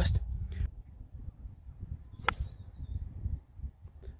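A golf club striking the ball on a tee shot: one sharp click a little past halfway, over a steady low rumble.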